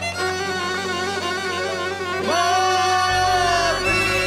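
Romani-style song's instrumental break: a violin plays a melody with heavy vibrato over a backing track, landing on a long held note about two seconds in, with the bass coming back in shortly before the end.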